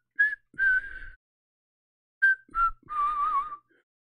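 A man whistling a short tune of about half a dozen brief notes, ending on a longer, wavering note.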